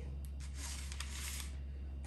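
A plastic syrup bottle being handled and shaken, with a few faint clicks and rustles over a steady low hum and room noise.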